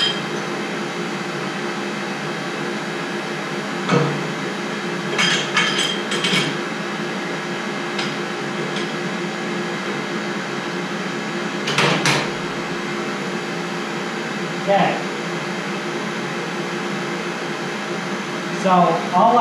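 Metal knocks and clinks of a steel tube being slid along and repositioned in a tube bender, a few scattered strikes with the loudest near the middle, over a steady mechanical hum.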